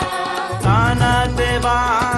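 Marathi gondhal-style devotional song: singing voices over steady percussion, with a low bass note coming in about half a second in.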